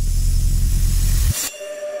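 Logo-intro sound effect: a loud deep rumble under a hiss that swells upward, cutting off sharply about a second and a half in. It gives way to soft, held synthesizer tones as the logo settles.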